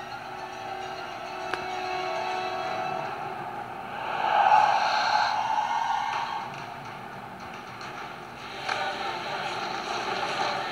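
Animated-film soundtrack of a wildebeest herd stampeding: a rushing, clattering noise of many hooves that swells to its loudest about four seconds in and picks up again near the end, with faint music under it.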